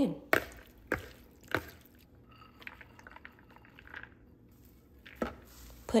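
Soup broth poured from a measuring cup into a bowl of minced chicken, with a few sharp clicks in the first two seconds, then only faint scattered sounds.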